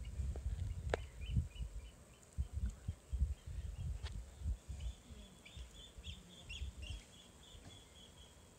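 A bird chirping over and over, short high calls a few times a second, over irregular low rumbling and a sharp click about a second in.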